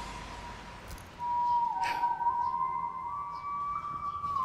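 Background music: a single sustained tone holding long, slow notes, stepping down about a second and a half in and rising a little near the end. A brief knock comes just before the two-second mark.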